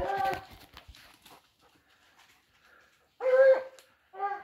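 Hunting dog barking: a short bark at the start over crackling and knocks from brush underfoot, then a louder, drawn-out bark near the end.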